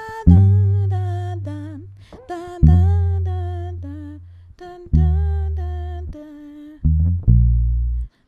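Five-string electric bass playing long root notes of a six–five–four–one chord progression in B flat, each struck and left to fade, a new note about every two and a half seconds with two quicker ones near the end. A woman's voice hums the melody along with the bass.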